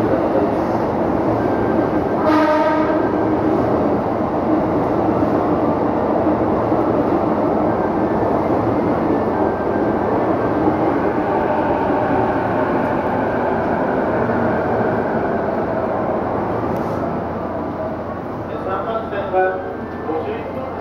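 Loud steady train and station noise from an E257 series 500 electric limited-express train standing at the platform. A short horn-like tone sounds about two seconds in.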